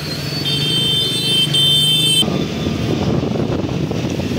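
Road traffic heard from a moving scooter on a wet road: a vehicle horn sounds twice in the first two seconds over a low engine hum. Then a steady rushing noise of wind and tyres on the wet road takes over.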